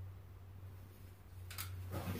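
Aerosol spray-paint can giving one short squirt about one and a half seconds in, over a faint steady low hum.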